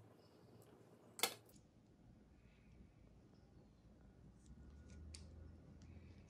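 Near silence while a mango is cut with a paring knife. There is one sharp click about a second in and a few light clicks near the end, from the knife and the fruit being handled over a granite counter.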